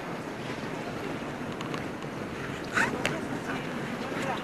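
Crowd of visitors talking and walking, a steady hubbub of many voices, with a couple of sharp clicks or knocks a little under three seconds in.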